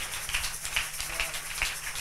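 Church congregation clapping in acclamation: irregular, overlapping hand claps with voices calling out underneath.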